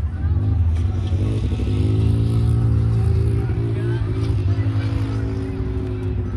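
Off-road vehicle engine, an ATV or side-by-side, running as it drives past close by. Its engine note holds mostly steady, shifting pitch a couple of times.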